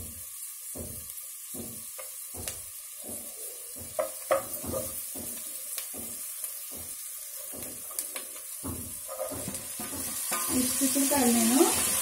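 Chopped onions sizzling in oil in a granite-coated non-stick pot while a plastic spatula scrapes and knocks against the pot in repeated strokes, with two sharper knocks about four seconds in. About eight seconds in, cut yard-long beans are tipped into the pot.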